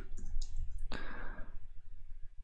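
A few clicks of computer keyboard keys, the loudest about a second in.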